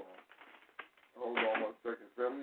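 Speech: a person talking in short bursts.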